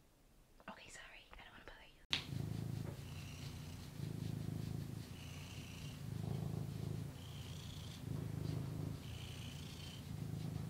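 Domestic tabby cat purring while being scratched on the head. It is a low, steady purr that starts about two seconds in and swells and eases with each breath, about once every two seconds.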